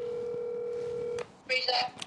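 Telephone ringback tone heard through a smartphone's speaker: one steady ring that cuts off sharply a little over a second in as the call is answered.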